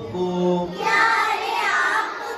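A group of young girls singing together in Hindi, the word "aapko" of a welcome song: a low held note, then a higher phrase that bends in pitch.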